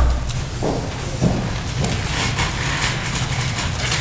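Meeting-room background: a steady low hum with faint scattered rustling and shuffling of papers and chairs, after a low thump at the very start.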